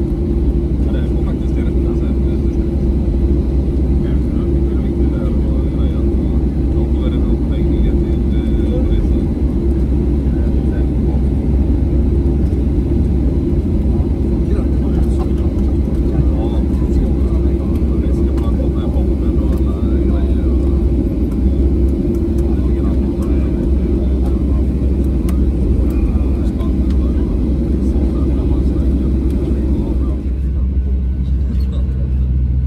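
Inside the cabin of a Boeing 737-700 taxiing after landing: the steady low rumble of its CFM56 engines at idle, with a constant hum over it.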